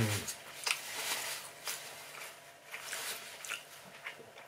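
A person chewing a mouthful of food with the mouth closed, in soft wet smacks and clicks, after an appreciative 'mm' hum that trails off at the start.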